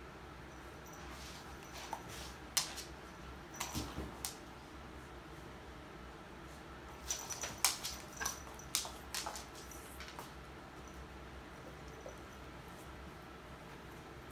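A dog and a kitten tussling on a wood floor: scattered sharp clicks and taps of claws and paws. They come in two flurries, one about three seconds in and one around eight seconds in.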